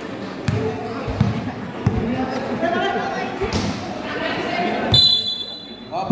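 A basketball bouncing on a hard court as it is dribbled: a sharp thud every second or less, over steady chatter from players and spectators. A brief high tone sounds near the end.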